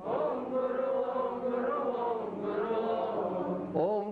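Several voices chanting a devotional prayer together in unison, held and drawn out without a break.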